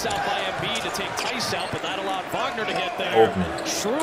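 Basketball game broadcast audio: a ball being dribbled on the hardwood court during live play, with a commentator's voice in the background.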